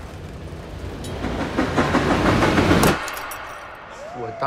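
Tram rumbling and clattering along its rails, growing louder from about a second in and cutting off abruptly about three seconds in.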